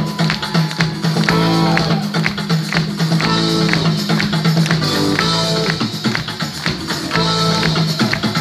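Live pop band playing an instrumental stretch, heard from the crowd: drums, keyboards and violins repeating short figures over a steady bass.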